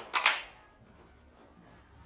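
A group of children clapping once on command, a ragged group clap with a few late claps just after it.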